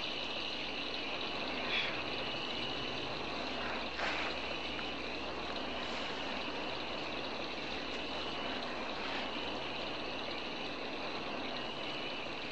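Steady night chorus of chirping insects, with a faint tick about two seconds in and another at four seconds.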